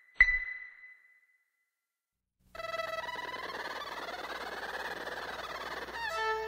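The last beep of a film-leader countdown: one short, sharp high beep that dies away, following the once-a-second beeps before it. After about two seconds of silence, electronic intro music sets in with several held tones and a whooshing swell that rises and then falls.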